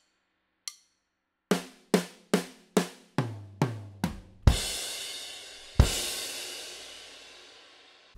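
Drum kit playing a slow punk/hardcore fill: a stick click to count in, then seven even drum strokes at about two a second that step down in pitch from snare to toms. The fill ends in two crash cymbal hits, each with a bass drum, and the second is left to ring out and fade.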